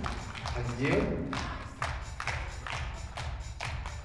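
A small group of people clapping their hands in applause after a scored point, about four claps a second.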